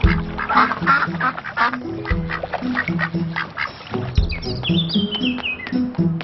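A cartoon duck quacking over light background music, with a high run of notes stepping downward about four seconds in.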